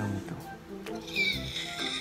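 Background music with a steady bass line. About a second in, a person lets out a short high-pitched squeal of delight that slides in pitch.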